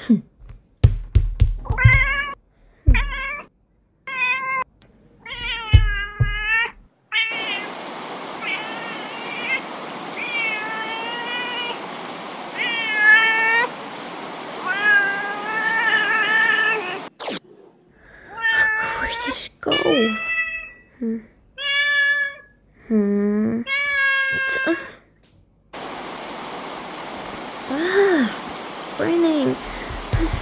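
Cat meowing over and over, some calls short and some drawn out and wavering. A steady hiss of rain sits behind the calls from about a quarter of the way in, and a few low thuds come near the start.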